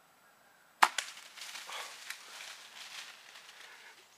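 A compound bow shot about a second in, a single sharp snap, followed by a few seconds of deer crashing away through dry leaves and brush.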